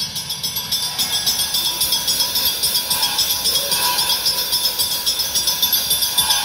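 Live band's percussion passage: a quick, steady pattern of light rattling percussion with a high shimmer, and no heavy drum hits.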